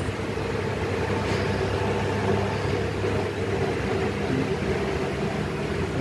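A steady mechanical hum running evenly, with no distinct clicks or knocks standing out.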